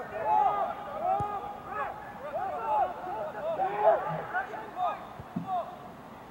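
Several people's voices calling and shouting over one another from across the field, too far off to make out words. There is a short dull thud about a second in.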